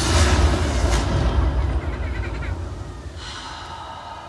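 Low rumble of fireworks booms echoing and dying away after a final burst, with a brief higher hiss of crackle a little after three seconds in.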